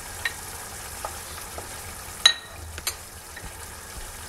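Tomato sauce cooking with a steady hiss in a frying pan as sliced green and red peppers are stirred in with a wooden spoon. A loud knock comes a little past two seconds in and a smaller one just before three seconds.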